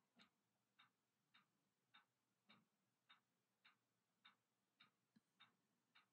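Near silence with faint, evenly spaced ticks, a little under two a second.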